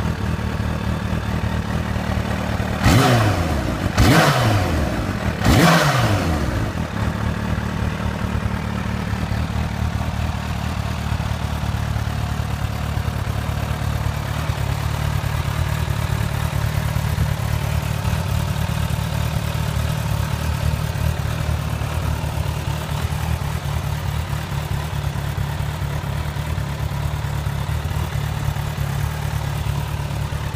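Kawasaki Ninja H2's supercharged inline-four engine idling through its Akrapovic exhaust, blipped three times in quick succession about three to six seconds in. Each blip is a sharp rise and fall in pitch, and then the engine settles back to a steady idle.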